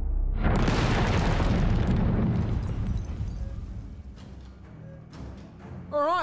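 Explosion sound effect: a sudden loud boom about half a second in, its rumble dying away over the next few seconds.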